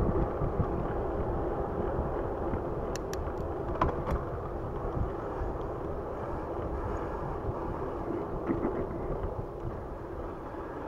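Wind rushing over the microphone and the tyre noise of a Raleigh Redux bicycle rolling along a paved trail, with a few light clicks about three to four seconds in.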